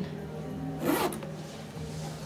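A brief swish of clothing about a second in, as a person turns, over a low, steady background music tone.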